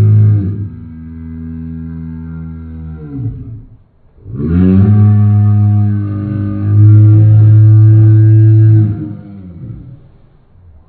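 A bluetick coonhound baying together with a man howling along, slowed down in slow motion so the calls come out deep and drawn out. A softer held howl fades about three seconds in, and after a short break a second, louder howl starts about four seconds in and holds until it fades near the end.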